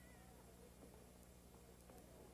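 Near silence over the steady low hum of an old film soundtrack, with a faint, distant baby's cry near the start and again about half a second later.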